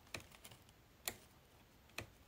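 Near silence broken by a few faint, short clicks about a second apart.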